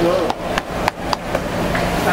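Metal tongs clicking sharply several times, roughly three strikes a second, over a wok of deep-frying oil sizzling steadily around pieces of swordfish tempura.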